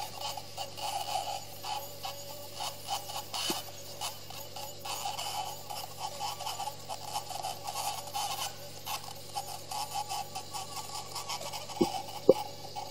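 High-speed otologic drill with a burr running against wet temporal bone under irrigation: a steady whine that wavers as the burr touches down, with irregular gritty scraping, as the bone surface is cleaned. Two short knocks near the end.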